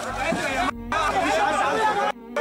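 Several people's voices shouting and talking over one another, excited and unclear, with a low rumble in the first half-second.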